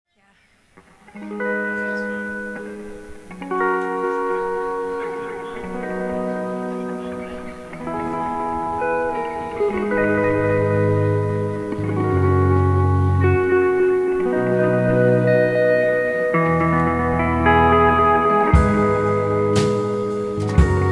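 A live indie rock band playing the slow instrumental opening of a song: sustained electric chords that change every second or two. Deep bass notes join about halfway through, and a few drum hits come near the end.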